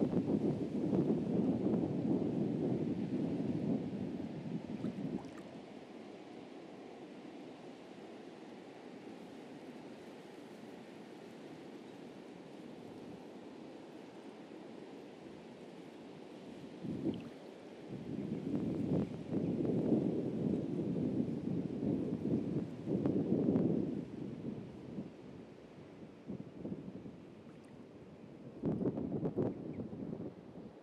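Sea surf washing on a beach, with gusts of wind buffeting the microphone. The gusts come in the first five seconds, again from a little past halfway, and briefly near the end.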